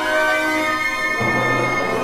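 Symphony orchestra playing sustained, held notes of a contemporary classical score; a little over a second in, lower instruments come in with a denser texture underneath.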